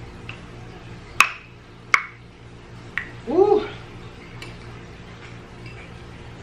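Metal spoon clinking against a glass soup bowl: two sharp, ringing clinks about three-quarters of a second apart, then a lighter one a second later. A short hummed vocal sound that rises and falls in pitch follows.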